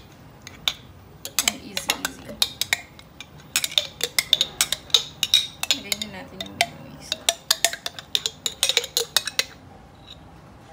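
Metal spoon clinking and scraping against a mayonnaise jar and a bowl as mayonnaise is scooped out: many sharp, irregular clicks coming in clusters.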